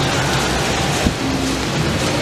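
Water splashing in a tiered fountain, a steady rush, with one short knock about a second in.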